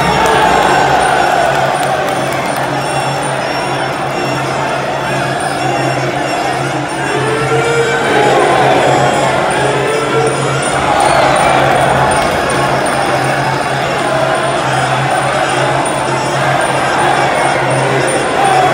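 Traditional live Muay Thai fight music (sarama): pi java oboe with drums and ching cymbals playing steadily through the bout, under a continuous din of crowd shouting.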